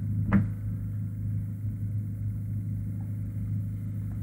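Steady low-pitched hum, with one short click shortly after the start.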